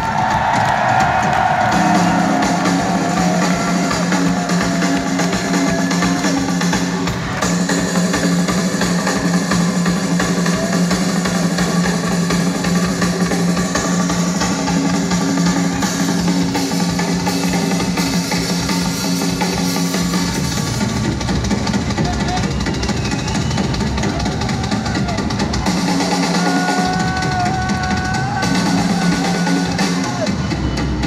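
Live rock band playing loud, recorded from the crowd, with the drum kit prominent. A held low bass note runs under it, drops out about two-thirds of the way through and comes back near the end.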